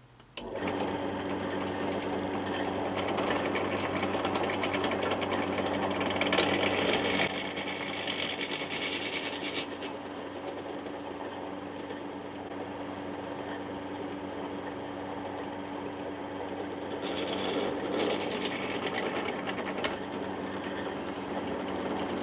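Benchtop drill press motor starting up and running steadily while a brad-point bit cuts into a hardwood block. The sound swells as the bit bites, loudest in the second half, and a thin, very high whine comes in about a third of the way through and stops near the end.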